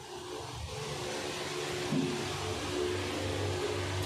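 Steady hiss from a gas stove burner and a kadai of hot frying oil, growing louder over the first second and then holding even.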